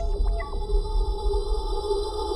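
Electronic logo-sting sound design: a few quick gliding synth tones in the first half second settle into a held chord of high, ringing tones over a deep rumble.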